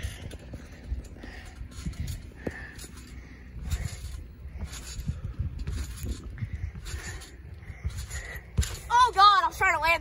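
Trampoline mat and springs thumping and creaking in a steady rhythm of bounces, about three every two seconds, as a boy pumps for height before a flip. A heavier landing thump comes near the end, followed by the boy's voice.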